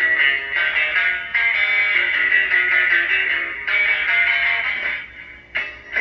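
A stored background-music tune playing from a caller box (caja de llamadores) fitted to a Stryker SR-955HP CB radio, a melody of plucked notes with a thin, tinny sound and a short break about five seconds in.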